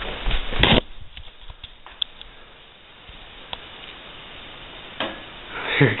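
A camera being snatched up and handled, with knocks and rustling in the first second, then a faint steady hiss with a few small ticks while it is held still.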